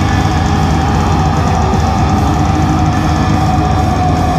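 Live band playing loudly on electric guitars and a drum kit, with one high note held steadily throughout.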